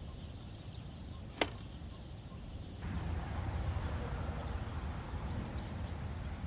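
A single sharp click from the aluminium folding camp table's frame as it is set up, about one and a half seconds in, over steady outdoor background noise that grows louder about halfway through.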